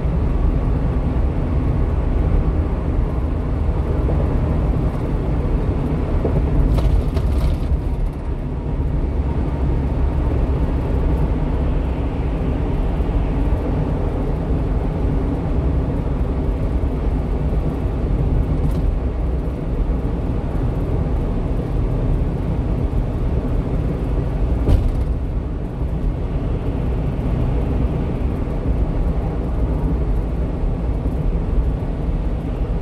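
Steady low rumble of a 1-ton refrigerated box truck cruising at highway speed: engine and tyre noise as heard from the cab. There is a short faint tap about 25 seconds in.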